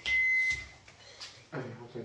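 Microwave oven beeping: a steady high beep that stops about half a second in, the signal that its heating cycle has finished. A voice follows near the end.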